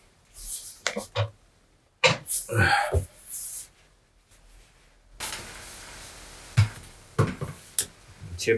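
Gaming chair parts being handled while the seat and back are lifted onto the base: scattered knocks and clicks, a short breathy vocal sound about two seconds in, and a steady rustling over the last three seconds with a few more clicks.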